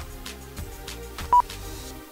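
Background music with a steady beat, cut through about a second and a half in by one short, loud, high beep from the race lap-timing system as a car completes a lap.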